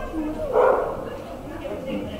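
A dog barking as it runs an agility course, with one loud bark about half a second in.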